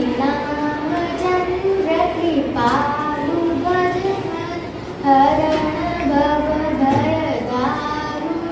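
A girl singing solo and unaccompanied, holding drawn-out notes.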